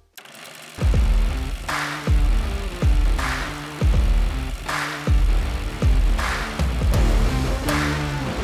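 Background music with a heavy bass beat that starts just under a second in, after a moment of near silence. It has a deep kick about every three-quarters of a second and a snare hit about every second and a half.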